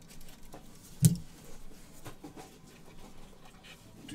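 A small hand blade slitting the seal along the edge of a cardboard trading-card box, with faint scratching and light ticks and one sharper knock about a second in as the box is handled.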